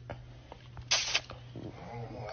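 A man's short hissing breath about halfway through and a faint murmur of his voice near the end, over a steady low hum.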